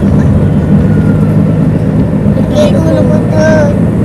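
Steady low rumble of a car's engine and tyres on the road, heard from inside the moving car. Voices talk briefly over it a little past halfway.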